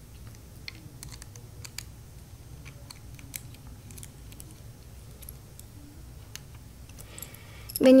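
Faint, scattered small clicks and ticks of a precision screwdriver working the two tiny screws that hold the steel plate over the DMD in a DLP LightCrafter light engine, over a steady low hum.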